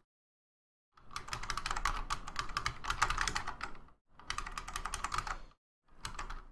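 Fast typing on a computer keyboard, starting about a second in. The keystrokes come in two quick runs, about three seconds and then about one and a half seconds long, with a short pause between them.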